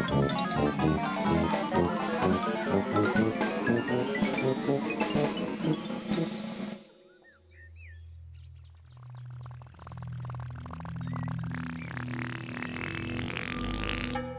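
Bouncy children's-TV background music with a rising run of notes, which stops abruptly about seven seconds in. Then slow, low held notes with a few high chirps, and a hissing whoosh that builds and rises as the Teletubbyland voice trumpet comes up.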